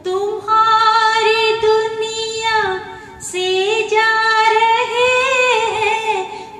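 A woman singing a slow Hindi film song unaccompanied, two long held phrases with vibrato and a breath between them about three seconds in.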